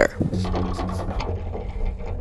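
Mechanical sound effect of a multi-blade wind pump's wheel and gear mechanism turning: a steady low hum and a faint steady tone with light ticking.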